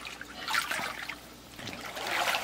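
Pool water splashing and lapping as a child paddles through it in a life vest and water wings, a little louder about half a second in and quieter past the middle.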